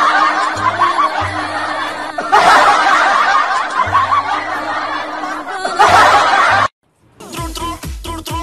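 Background music with a high, rapid snickering laugh sound effect laid over it in three stretches. The sound drops out briefly near the end, then music with a steady beat starts.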